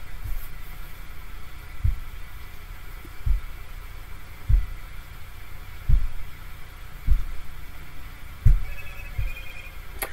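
Dull low thumps, about one every second and a half, over a steady low hum.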